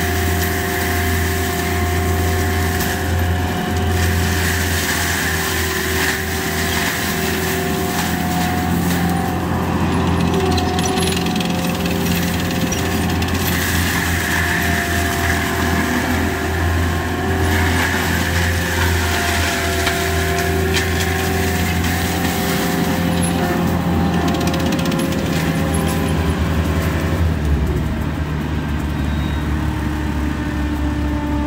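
ASV RT-120 Forestry compact track loader's diesel engine running hard, driving a Fecon Bullhog drum mulcher as it grinds brush and small trees; a steady engine and drum drone with a rougher noise that swells and eases as the head bites into the material. The engine pitch shifts slightly near the end.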